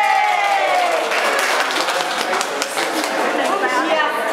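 The end of a group song, its held last note falling away about a second in, followed by hand clapping and voices.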